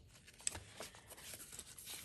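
Faint rustling and light clicks of a paper-covered envelope journal being handled and turned over in the hands, with one sharper tap about half a second in.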